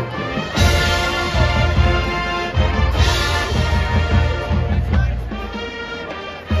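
High-school marching band playing live on the field, with brass over a driving drum line. Louder full-band hits come about half a second in and again at about three seconds.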